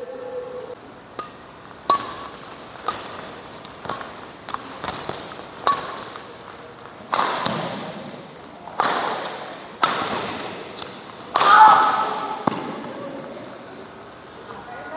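Badminton rally: sharp cracks of rackets striking a shuttlecock, roughly a second apart at first, mixed with thuds of footwork on the court, ringing in a large hall. Longer, noisier bursts come later.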